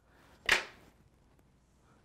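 A single sharp snip of fly-tying scissors cutting material at the fly on the vise, about half a second in.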